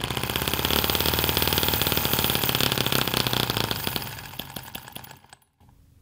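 A tiny M16 1.6cc four-stroke model engine with a transparent resin cylinder, running fast on methanol enriched with 16% nitromethane at about 5800 rpm. It fires only once every twelve strokes. It fades from about three and a half seconds in and dies out just after five seconds.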